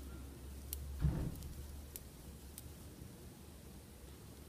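Faint sounds of crocheting by hand: a soft bump about a second in and a few light ticks from the hook and yarn being worked, over a low steady hum.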